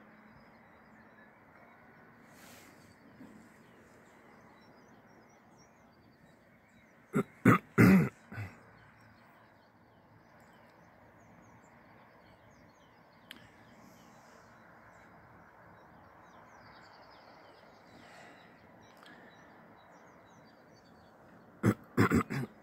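Faint steady outdoor background noise, broken about seven seconds in by four short, loud throaty sounds in quick succession, either harsh coughs or barks.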